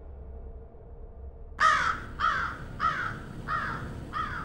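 A crow cawing: a run of about five harsh caws, roughly half a second apart, beginning about one and a half seconds in.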